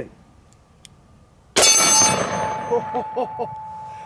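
A single shot from a Smith & Wesson 500 Magnum Performance Center revolver with a 3.5-inch barrel, about a second and a half in: one sharp report with a long echoing tail. The struck steel target rings on with a steady tone.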